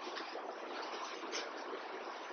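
Faint, steady hiss of room background noise, with no distinct events.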